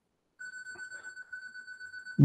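DSLR self-timer counting down after the shutter button is pressed: a high, steady electronic beep that starts about half a second in.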